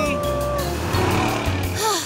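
Cartoon monster truck's engine and tyre sound effect as it drives up, over background music. A held sung note ends about half a second in, and a short voice sound starts near the end.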